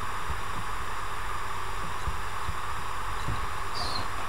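Steady background hiss and low hum of the recording microphone, with faint soft low thumps scattered through.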